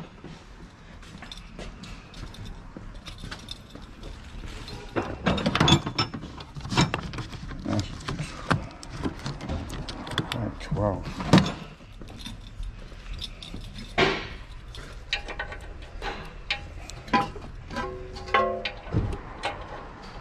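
Irregular metallic clicks and clinks of impact sockets being handled and pulled from a socket rail on a steel tool chest.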